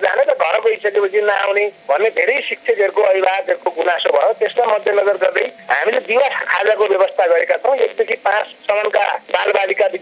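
Speech only: a person talking continuously, with a thin, narrow-band sound like a radio broadcast.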